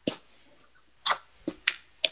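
About five short, sharp clicks, unevenly spaced over two seconds.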